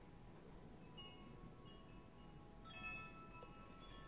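Faint chimes ringing: a few scattered notes, then a cluster struck together about three-quarters of the way through, each tone lingering.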